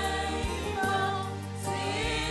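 Women's church choir singing a Swahili gospel song in harmony, holding long notes, over keyboard accompaniment with a deep bass.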